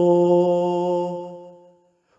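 A man singing one long held note in an Urdu song, steady at first and then fading away into silence near the end, with no accompaniment heard.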